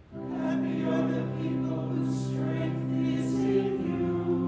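Church choir singing a slow phrase with long held notes.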